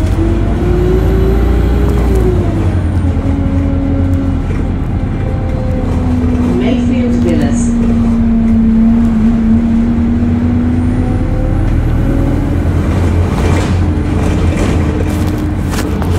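Alexander Dennis Enviro200 single-deck bus running. Its engine and driveline drone and whine, the pitch falling early on, holding low and steady for several seconds, then rising again as the bus changes speed. Clicks and rattles come near the end.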